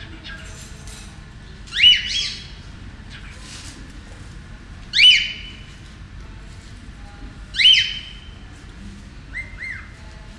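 A pet parrot calling three times a few seconds apart, each call a loud squawk that sweeps up in pitch and then holds steady, followed by two softer short calls near the end.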